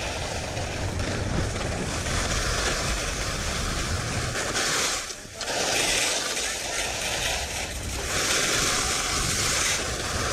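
Wind buffeting the action camera's microphone and skis running over firm groomed snow, the high scraping hiss of the edges swelling and fading with the turns and dropping out briefly about five seconds in.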